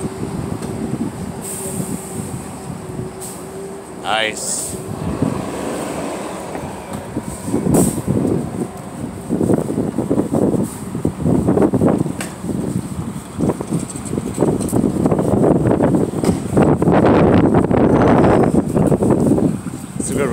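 City street noise of passing traffic with wind buffeting the phone microphone. A steady whine in the first few seconds ends in a sharp rising glide about four seconds in, and the rough, gusting noise grows louder through the second half.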